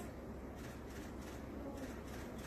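Quiet, steady low hum and faint buzz of room noise.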